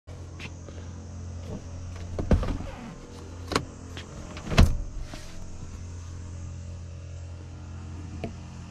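Rear seat of a Volkswagen Tiguan being handled, giving three loud clunks about a second apart, over a steady low hum.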